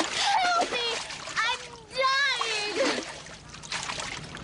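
A girl crying out in a high voice about three times while thrashing and splashing in water.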